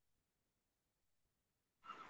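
Near silence: a pause on a video call, with a faint hiss rising just before the end as a voice comes in.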